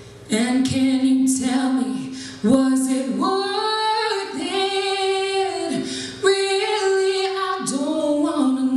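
A woman singing into a microphone, in phrases with several long held notes.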